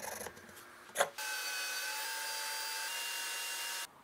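A small knife scraping and paring a pine block, with a sharp click just after a second in; then a small power tool's motor running steadily with a high whine for about two and a half seconds, stopping abruptly.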